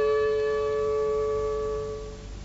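Piano accordion holding the last chord of a closing phrase: one long sustained tone that slowly fades away near the end, the bellows eased off to close the phrase.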